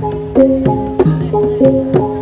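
Javanese gamelan playing jathilan dance music: struck metal keys sound a stepping melody at about three notes a second, each note ringing on, over sharp drum strokes.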